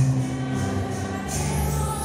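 Church choir singing a hymn in long held notes, over a steady beat of light percussion about twice a second.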